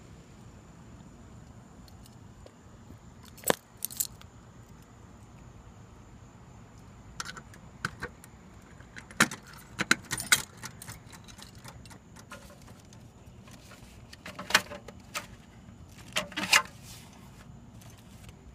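Keys jangling in several short bursts, over a faint steady background hiss.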